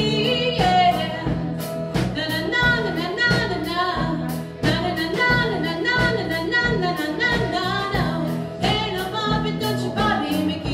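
A live country-rock band: a woman singing over electric or acoustic guitar, bass guitar and a drum kit, with regular drum hits.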